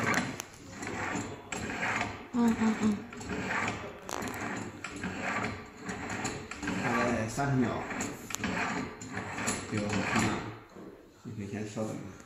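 People talking, with a few sharp metallic clicks from the smart manhole cover's lock handle as it is turned and raised.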